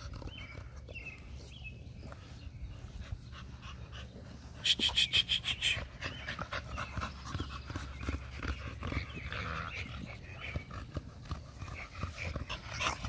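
An American Bully dog panting with quick, rhythmic breaths. A short, louder run of rapid pulses comes about five seconds in.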